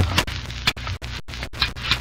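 Sword-fight sound effect from an old radio drama: sabres clashing and scraping in several sharp, irregular metallic strikes over the hiss and hum of the old recording.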